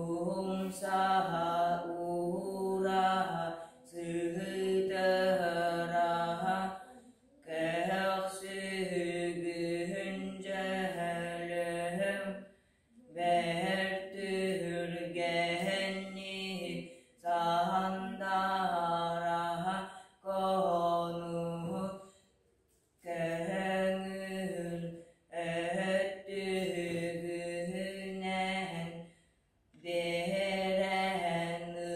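A boy singing Sakha toyuk solo and unaccompanied, holding close to one pitch in chant-like phrases of a few seconds each, broken by short breaths.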